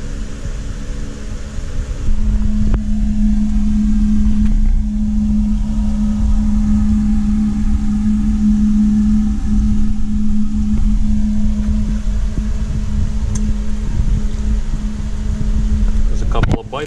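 Steady machine hum with a strong low drone, getting louder about two seconds in and then holding even.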